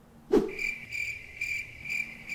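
A short falling swoosh, then a crickets-chirping sound effect: a steady high chirp repeating about four times a second, the comic cue for an awkward silence after a joke falls flat.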